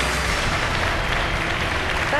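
Studio audience applauding.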